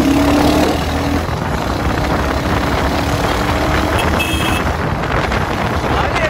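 Motorcycle riding along the road: a steady engine note under constant wind and road noise.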